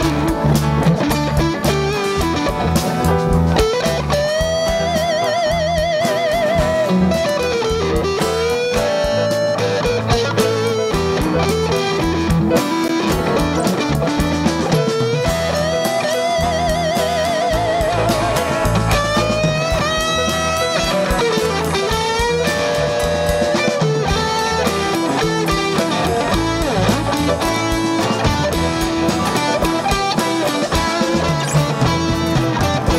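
Live band playing an instrumental passage: strummed and picked guitars over a drum beat, with a lead melody of long notes held with vibrato.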